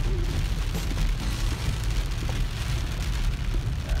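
Rain falling on the windshield and body of an off-road vehicle, heard from inside the cabin over the steady low rumble of the engine and tyres on the dirt trail.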